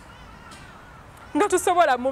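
A person's voice: a quiet stretch, then a loud, drawn-out vocal exclamation starting about a second and a half in.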